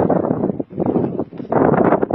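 Strong wind buffeting the microphone in loud gusts, with short lulls about halfway through.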